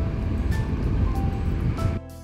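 Vespa GTS 300 scooter underway: steady engine and wind rumble with background music over it, cut off suddenly at the end.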